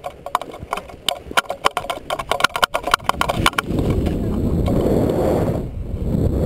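Quick, irregular footfalls of two people running down a paragliding launch ramp at takeoff, several a second. About three and a half seconds in they give way to a steady rush of wind on the microphone as the tandem paraglider lifts off.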